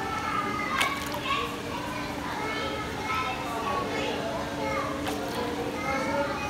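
Children's voices chattering and calling over one another in a crowd, with a steady low hum underneath. There are two brief sharp sounds, about a second in and near the end.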